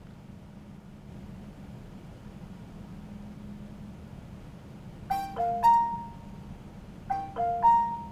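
KitchenAid smart commercial-style range's control chime: a short four-note chime played twice, about two seconds apart, from a little after halfway, with the last note of each ringing longest. It signals that the range has completed its reset after the start button was held for 15 seconds. A faint steady low hum runs underneath.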